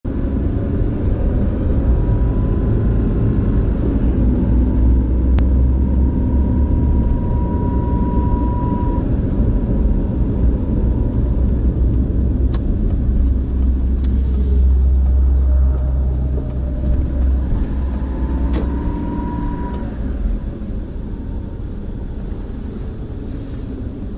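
Car driving, heard from inside the cabin: a steady low rumble of engine and road noise, easing off in the last third as the car slows.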